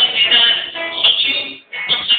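A tango sung live by a male voice, accompanied by an acoustic guitar, with a brief pause between phrases near the end.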